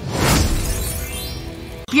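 A crash sound effect marking a scene transition: a sudden burst that rings and fades for nearly two seconds, then cuts off abruptly, over background music.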